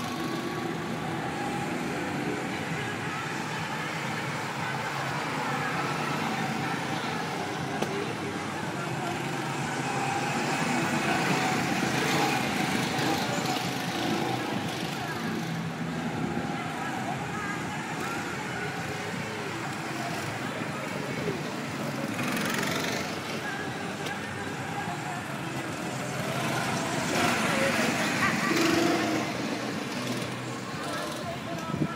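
Small go-kart engines buzzing as karts lap the track, growing louder as karts pass, around the middle and again near the end, with voices in the background.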